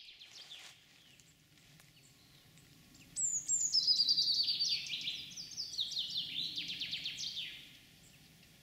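Birdsong: a brief burst of high chirps, then from about three seconds in a longer run of rapid, repeated falling chirps that fades away near the end.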